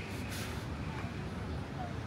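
Busy outdoor crowd ambience: indistinct voices of people around, over a steady low rumble, with a short hiss near the start.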